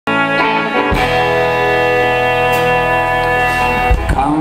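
Metal-bodied resonator guitar playing alone: a chord struck at the start and left ringing, another struck just before a second in and held with long sustained notes, and a fresh strike near the end.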